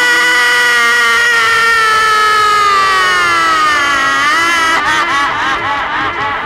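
A performer's voice in one long, loud, drawn-out cry held on a single pitch, then sliding down in pitch and breaking into short sung or spoken syllables near the end.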